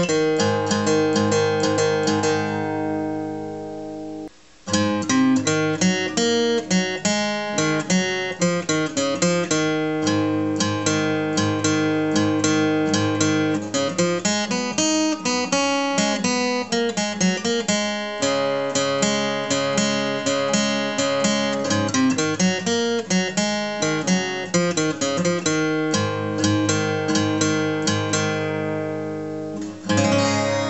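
Steel-string acoustic guitar with a capo at the fourth fret, played with a pick: a picked phrase rings out and fades, then after a brief break comes a long run of quick picked notes and chords that ends on a chord left ringing.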